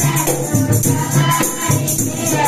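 Group singing of a Christian children's action song with musical accompaniment.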